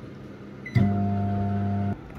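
Microwave oven switching on with a click about three quarters of a second in, then running with a steady electrical hum that stops abruptly near the end.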